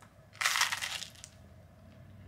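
A crunchy bite into a toasted English muffin close to the microphone: one burst of crunching about half a second in, lasting under a second.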